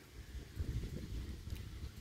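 Quiet outdoor background: a faint, uneven low rumble with light hiss.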